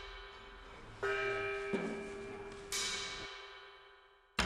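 Background music of bell-like struck tones: two main strikes about a second and a half apart, with a softer one between, each ringing out and fading away.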